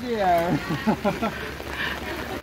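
Speech: a person's voice talking, with no other sound standing out.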